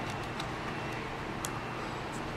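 Steady low room noise with two faint, short clicks, about half a second in and again near the end, from small plastic wire connectors being worked loose from the indicator's circuit board.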